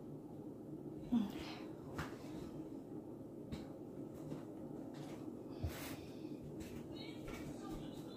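Quiet kitchen room tone with a faint steady hum. A few soft clicks and knocks come from handling the switched-off electric hand mixer and its batter-coated beaters.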